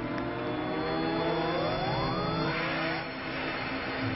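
Electronic rising sweep: several pitches glide upward together over a steady drone, climbing most steeply between one and three seconds in.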